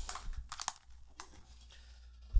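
A few faint, sharp clicks and small rustles over the first second or so.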